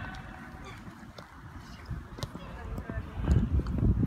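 Scattered sharp knocks and taps of a football being kicked and players running on artificial turf, with a low rumble building up near the end.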